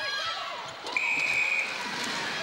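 Netball umpire's whistle: one steady shrill blast of under a second, about a second in. Court shoes squeak on the hardwood floor before it, over crowd noise.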